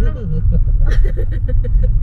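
A woman laughing, a quick run of short breathy laughs from about a second in, over the steady low rumble of a moving car's cabin.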